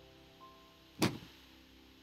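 A single sharp click about halfway through, over faint steady hum.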